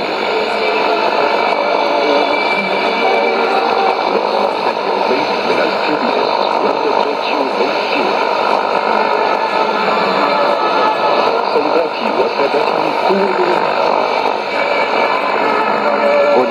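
Shortwave AM broadcast heard through a Sony ICF-2001D receiver: a voice half buried in steady hiss and noise.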